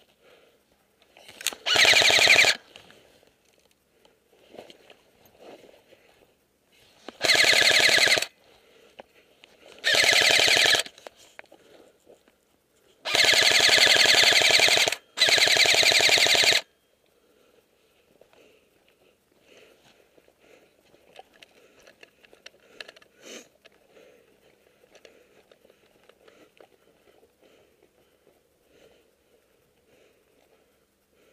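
Airsoft electric rifle firing on full auto in five short bursts of about a second each. The last two bursts run almost back to back. Between and after the bursts there is only faint rustling of movement.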